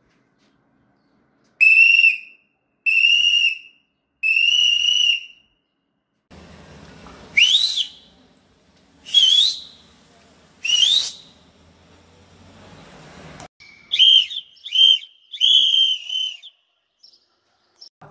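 Loud, shrill whistling. It starts with three long steady blasts, then three short whistles that slide upward, then a quick run of shorter whistles near the end.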